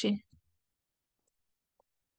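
The last syllable of a woman's spoken word, then near silence broken by a few faint computer keyboard clicks as text is typed.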